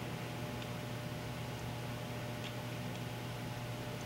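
Steady low electrical hum and room tone, with a few faint, light ticks from handling the metal probe of an ultrasonic hardness tester and its screw-on foot.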